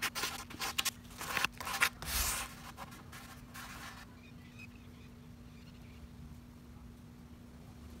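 Hand-sanding a chewed-up wooden table-leaf corner with a folded sheet of 220-grit sandpaper: a run of short, irregular rasping strokes that stops about four seconds in. After that only faint room tone with a low steady hum remains.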